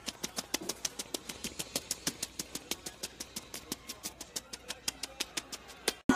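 A Boston terrier licking a man's face: quick wet licks and smacks, about eight a second.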